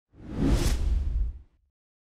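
Whoosh sound effect of an outro logo sting, with a deep low rumble beneath it. It swells up quickly and fades away within about a second and a half.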